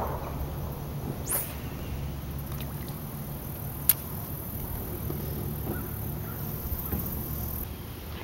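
A small motor humming steadily at a low pitch, with a quick rising swish about a second in and one sharp click near the middle.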